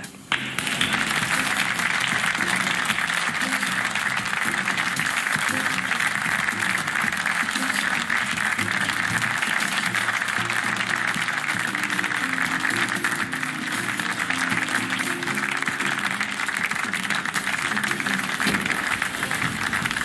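Studio audience applauding, starting about half a second in and holding steady, over the programme's closing theme music.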